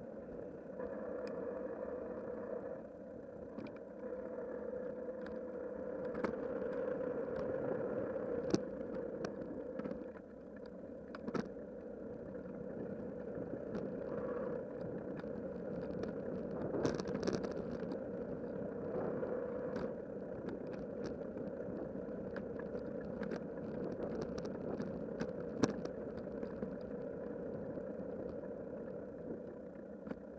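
Bicycle rolling along a rough, narrow asphalt path: a steady hum of tyre and road noise, broken by sharp clicks and rattles as the bike jolts over cracks and bumps.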